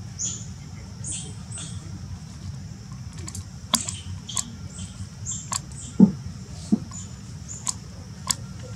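Baby macaque giving short, high-pitched squeaks, many of them scattered through, among sharp clicks and over a steady low rumble. A single dull thump about six seconds in is the loudest sound.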